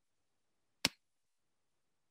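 A single sharp click of a computer mouse button, a little under a second in.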